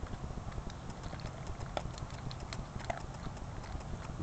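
Golden retriever eating dry kibble from a stainless steel bowl: irregular crisp clicks and crunches as it chews and pushes the pieces around the metal bowl.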